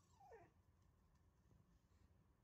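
A dog gives one short, faint whine that falls in pitch, just after the start, during a brief scuffle between two dogs.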